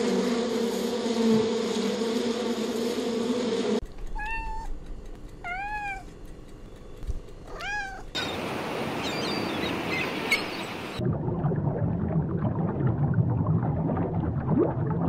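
A bumblebee buzzing in a steady hum, then three cat meows, each one an arching cry. After them comes a stretch of hissy noise with faint chirps, and then a low rumble.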